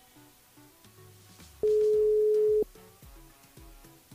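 Telephone ringback tone on an outgoing call: one steady beep of about a second near the middle, the line ringing at the called party's end, over soft background music.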